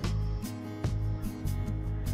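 Instrumental background music with a prominent bass line and sharply struck notes.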